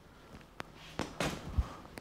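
Faint handling noises: a single sharp click about half a second in, a brief rustle around a second in, and a soft low thump near the end.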